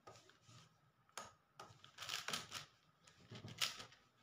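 A 4x4 puzzle cube being turned by hand: quick plastic clicks and clacks of its layers turning, in irregular bursts, the loudest near the end.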